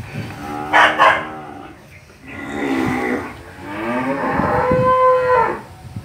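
Young Charolais calf bawling three times in a row, long drawn-out calls, the last one the longest and held on a steady pitch.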